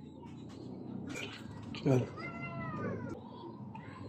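A single drawn-out animal call, rising then falling in pitch and lasting about a second, begins about two seconds in. A short louder sound comes just before it, over faint background noise.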